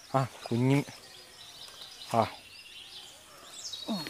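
A man's voice in three short utterances, with a quiet outdoor background between them.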